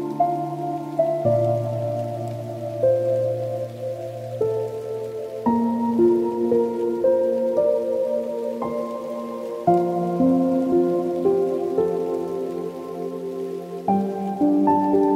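Slow, soft solo piano music: held chords and single notes, a new note or chord sounding about every second or so, ringing on under the next.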